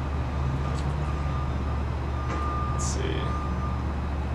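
Steady low background rumble with a faint thin tone coming and going, and a short vocal sound about three seconds in.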